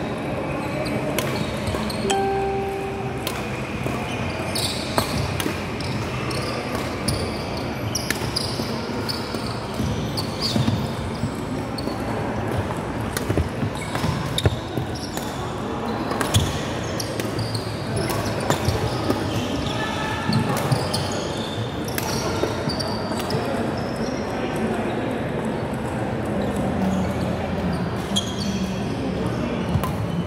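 Badminton being played on a wooden court in a large hall: sharp racket strikes on the shuttlecock at irregular intervals, with footsteps on the court, over a background of voices.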